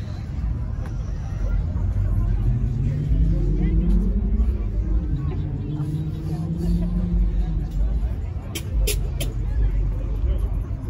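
Car engine speeding up, its pitch rising over about two seconds, then holding steady for a few seconds before dropping away, over a steady low rumble. Three sharp clicks near the end.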